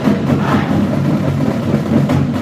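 Marching band playing loudly, its brass section holding low sustained chords with only a few percussion hits, echoing in a large arena.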